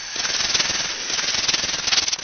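Rattlesnake rattling: a fast, dry buzz that swells in the first moment, then holds steady.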